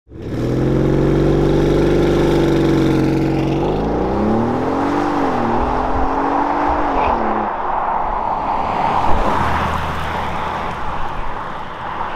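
Porsche Cayenne engine accelerating hard: a steady note for about three seconds, then its pitch climbs, dips briefly as it shifts up a gear, climbs again and falls away about seven seconds in, leaving steady tyre and road noise.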